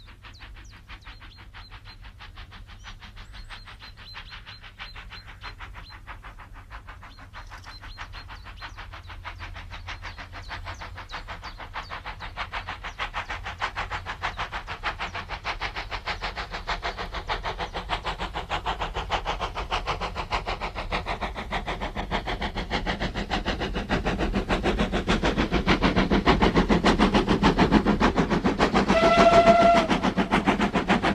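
Steam locomotive approaching at speed, its rapid exhaust beats growing steadily louder throughout. A short steam whistle blast sounds near the end.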